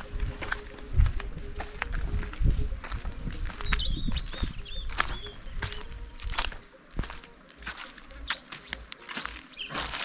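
Footsteps crunching and rustling over dry litter and plastic rubbish, many short crackles, with low rumbling thuds in the first part. A few high bird chirps come about four to five seconds in.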